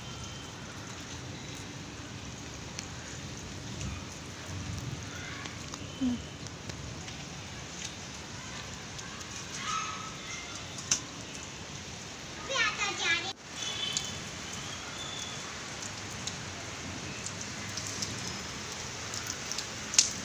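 Steady rain falling on a rooftop: an even hiss of rain. There is a brief vocal sound about six seconds in and a short burst of voices about two-thirds of the way through.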